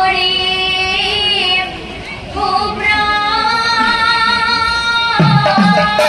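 A woman singing solo in the Assamese Nagara Naam devotional style, in two long phrases of held, slightly wavering notes with a short pause between them. Drum beats come in near the end.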